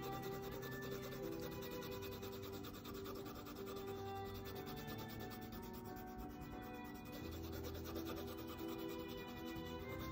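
Colored pencil shading on paper: a steady, rapid scratching of the pencil strokes, with soft background music of long held notes underneath.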